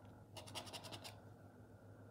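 Edge of a plastic poker chip scratching the latex coating off a scratchcard: a quick run of about nine short strokes, lasting under a second, a little way in.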